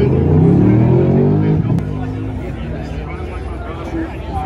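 Race car engine revving on the grid: its pitch climbs for under two seconds and then drops back to a lower, steady running note. Crowd chatter goes on under it.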